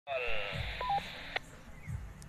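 Handheld ham radio's speaker at the end of an incoming transmission: the last of a voice with radio hiss, then a two-tone roger beep, a higher tone followed by a lower one, and a click as the squelch closes about a second and a half in.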